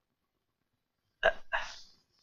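A brief human vocal sound in two quick bursts about a second in, after near silence.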